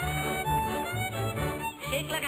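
Instrumental square-dance fiddle tune over an alternating two-note bass line, played between the caller's lines.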